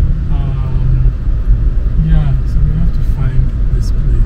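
Steady low rumble of a Toyota's engine and tyres heard from inside the cabin while driving, with a voice speaking a few short, indistinct phrases over it.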